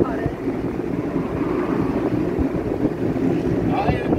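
Steady rumble of a moving vehicle driving along a city road, with traffic noise around it.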